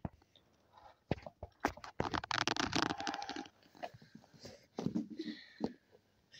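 Plastic toys being handled: scattered clicks and knocks, with a rapid rattling run for about a second and a half near the middle.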